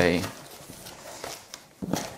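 Cardboard shipping carton being opened by hand: its top flaps pulled up and folded back, with dry scraping and rustling of cardboard and a short louder rustle near the end.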